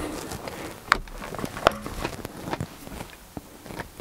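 Small flat screwdriver prying the plastic BMW roundel badge out of an E28 steering wheel hub: faint scraping with a few sharp clicks, the two loudest about a second in, under a second apart, as the badge pops loose.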